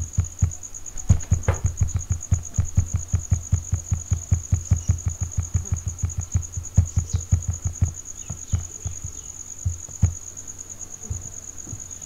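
Computer mouse scroll wheel ticking quickly and evenly, about six ticks a second, through a font list for several seconds, then a few single mouse clicks. A steady, high-pitched, pulsing trill runs underneath.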